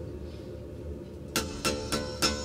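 Steel-string acoustic guitar: low notes ring on for over a second, then a rhythmic strum begins, about three strums a second.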